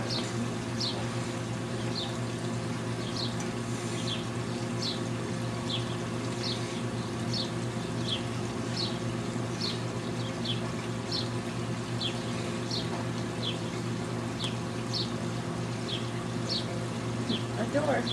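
A small bird repeating a short, high, downward-sliding chirp over and over, about two a second, over a steady low hum.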